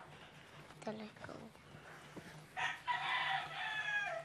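A rooster crowing once, one long call starting about two and a half seconds in and running to the end.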